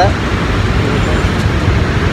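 Steady road traffic noise with a low rumble, cars and scooters passing.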